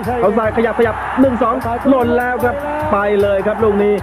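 Background music with a steady beat, about four beats a second, with a man's voice over it.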